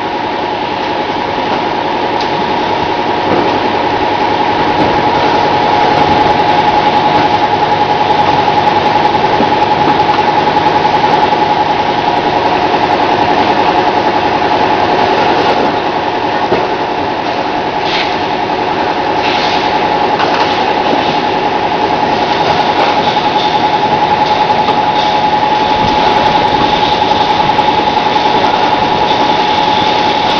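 Bottling-line conveyor and marking machinery running: a steady mechanical hum with a constant high whine, and a couple of brief knocks about two-thirds of the way through.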